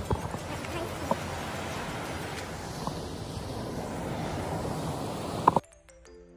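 Footsteps on a sandy beach path over a steady rushing background, with a few sharp clicks. Near the end it cuts off abruptly and soft background music takes over.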